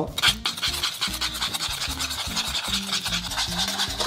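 A metal spoon stirring eggs into flour and sugar in a saucepan, a fast, even scraping rub against the pan with many strokes a second. Background music plays underneath.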